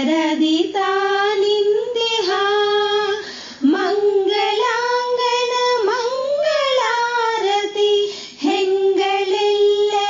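A high female voice singing a Kannada devotional song in raga Gauri Manohari, holding long notes with ornamented slides and wavers in pitch. It breaks briefly for breath about three and a half and eight seconds in.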